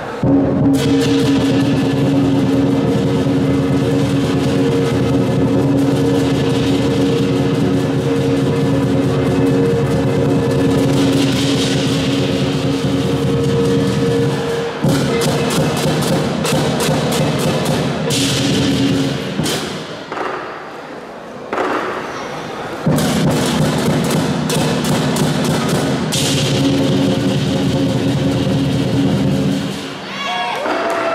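Southern lion dance percussion band playing: a big drum, gong and clashing hand cymbals in a fast, dense rhythm with a ringing sustain. The playing eases briefly about twenty seconds in, then comes back in full.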